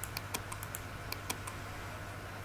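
A quick, uneven run of about ten light clicks from a computer's keys or mouse button, over a steady low hum.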